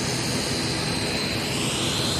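Jet aircraft engines running, a steady loud rushing noise with a high, steady whine that swells near the end.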